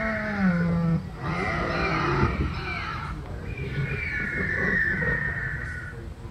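Recorded dinosaur roar and growl sound effects from the ride's loudspeakers, heard as three long, wavering calls with short breaks between them.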